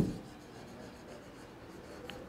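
Faint scratching of a stylus on an interactive board's screen as a word is handwritten.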